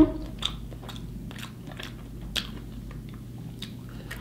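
A person chewing a mouthful of sandwich, with short wet mouth clicks about once a second.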